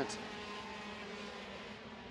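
Several KZ2 racing karts' 125cc two-stroke engines running on track, a steady drone that eases off slightly.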